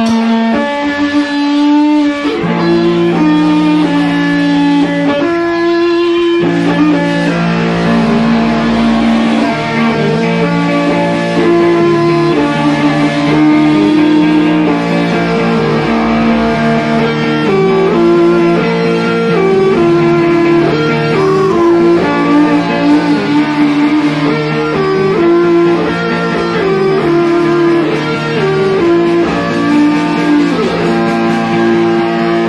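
A rock band playing live, led by electric guitar with bass underneath: an instrumental passage of sustained chords that change every second or two.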